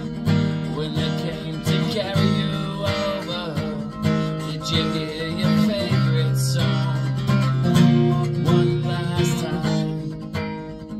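Steel-string acoustic guitar strummed steadily in a chord pattern, the chords changing about six seconds in and again near eight seconds.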